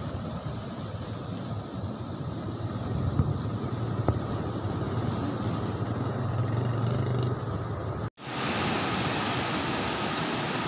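Floodwater rushing and churning through the gates of a barrage, a steady even wash of water noise. The sound drops out for a split second about eight seconds in.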